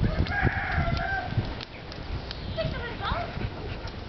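Australian shepherd's forepaws scraping and thudding in loose soil as it digs a hole. A harsh call about a second long sounds at the start, and a few short rising calls come about three seconds in.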